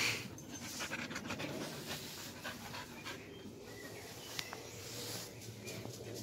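An Australian Shepherd panting steadily, with faint scattered clicks and one sharp tick a little over four seconds in.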